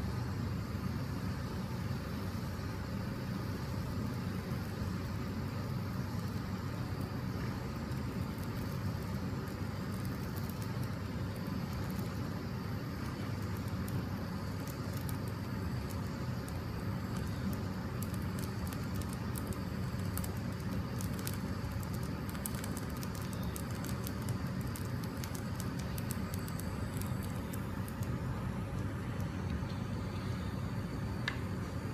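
Small handheld gas torch flame running with a steady rushing noise. From about halfway through, faint crackles come from the silicone part burning in it.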